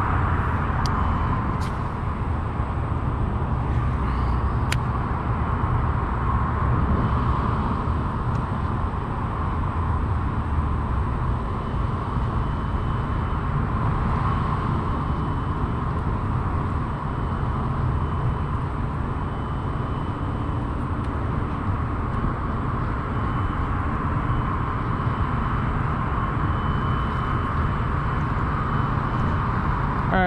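Steady outdoor background noise: a low wind rumble on the microphone over a constant distant traffic hum, with a few faint clicks in the first five seconds.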